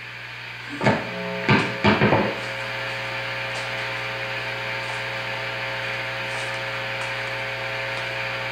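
Electric guitar amplifier left on with the guitar idle: a steady mains hum and hiss. A few sharp thumps come through about one to two seconds in.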